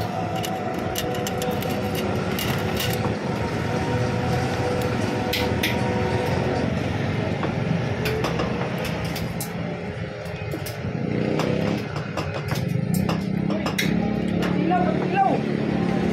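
Busy street-side ambience: indistinct voices and a pop song over motorcycle traffic, with a motorbike engine growing louder in the second half. Sharp clicks of a metal spoon against a melamine bowl come now and then.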